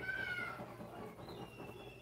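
An animal call: a short cry with a slightly falling pitch at the start, followed about a second later by a thinner, higher call that drops in pitch and holds.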